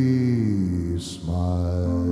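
Male jazz singer holding a long wordless note that slowly falls, a short hiss about a second in, then a new held note, over the band's soft accompaniment.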